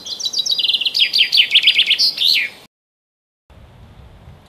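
Common chaffinch singing one song: a run of notes falling in pitch that speeds up into a trill and ends with a flourish, then cuts off abruptly.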